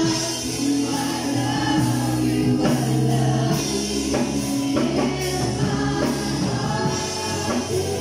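Live gospel worship music: singing into a microphone over electric keyboard accompaniment, played through a PA, with sustained low bass notes under the changing sung melody.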